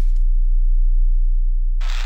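Intro of an electronic house track: a loud, very deep, steady synthesized bass tone. A burst of hissing white noise cuts off just after the start, and another begins near the end.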